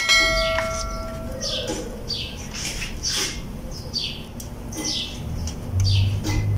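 A bell-like chime rings out at the start and fades over about a second and a half, the sound effect of the animated subscribe button. Under and after it, a knife saws back and forth through a soft bread roll with short rasping strokes about once a second.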